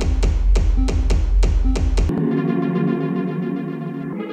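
Electronic techno: a beat of about four hits a second over heavy deep bass cuts off abruptly about two seconds in. It gives way to sustained chords from an Arturia MicroFreak synthesizer.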